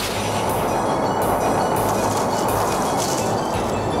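A sustained rumbling roar, a dubbed film sound effect for the blast of force from a kung fu palm strike.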